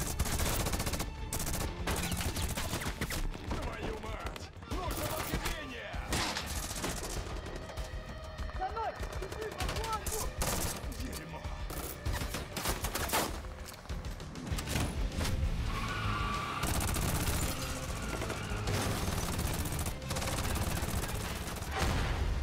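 Film gunfight: volleys of rapid rifle and automatic gunfire, with shots cracking in quick clusters throughout.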